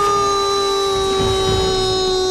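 A man's voice holding one long sung note, steady and slowly sagging in pitch, from an animated film character.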